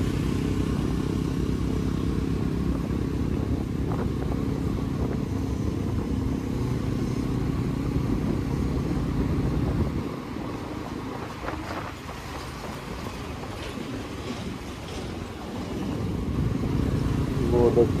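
Motorcycle engine running under way, heard from the rider's seat; it eases off about ten seconds in and builds up again near the end.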